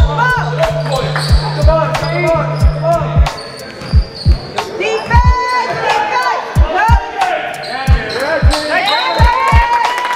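Basketball bouncing on a hardwood gym floor, repeated thuds about one to two a second, mixed with short sneaker squeaks. A low steady hum cuts off about a third of the way in.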